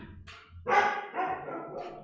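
Laughter trailing off in a few short pitched bursts after a brief pause.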